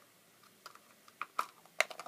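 A clear plastic pacifier case being handled: a few short, sharp plastic clicks and taps in the second half, the loudest near the end.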